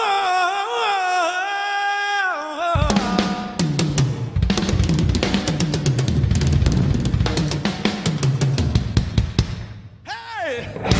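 A male rock singer holds a long unaccompanied wordless note that wavers and bends for about the first three seconds. Then a drum kit comes in with a busy run of bass drum, snare and cymbal hits that carries on until near the end.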